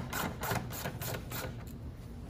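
A hand screwdriver turning a license plate screw loose: a quick run of small clicks and scrapes, about four or five a second, that fades and stops about a second and a half in.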